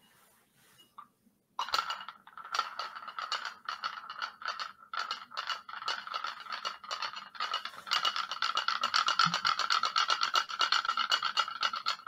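Sphere magnet rattling and clicking against a small glass cup on a pulsed coil, each tap making the glass ring. The taps begin about a second and a half in, come irregularly at first, then quicken into a rapid, even rattle about two-thirds of the way through.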